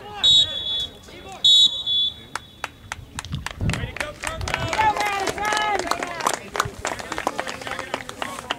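A referee's whistle blown in two short, shrill blasts about a second apart, followed by people's voices.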